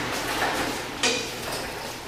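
Wire birdcage handled and carried, its bars and fittings lightly rattling, with one sharper clink about a second in.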